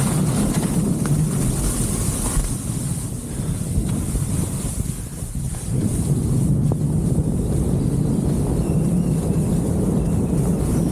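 Wind rushing over an action camera's microphone while skiing, with skis hissing through soft spring slush. It eases off for a couple of seconds in the middle, then builds again.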